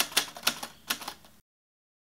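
Typewriter key-strike sound effect: a quick, uneven run of sharp clicks as the date is typed on screen, stopping abruptly about one and a half seconds in.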